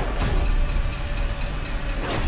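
Film trailer soundtrack playing with no dialogue: a dense, loud, bass-heavy rumble of score and sound effects.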